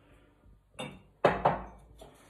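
Glass and crockery knocking in a kitchen cupboard as a drinking glass is taken off a shelf. A light clink just under a second in is followed by a louder clunk that rings out briefly.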